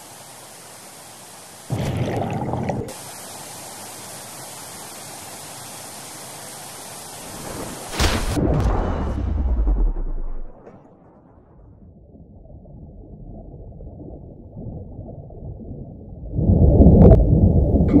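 A stream rushes steadily, with a splash about two seconds in. Around eight seconds a deep boom hits and its rumble falls in pitch. The sound then turns muffled, as heard under water, and swells near the end into loud underwater churning and bubbling.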